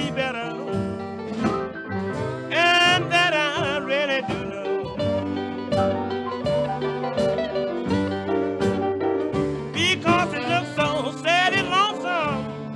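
Instrumental break in a blues song: a lead instrument plays wavering, bending phrases a few seconds in and again near the end, over a steady plucked accompaniment.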